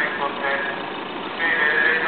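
Many voices reciting a Catholic prayer together in a steady chant, with car engines running as cars drive past close by.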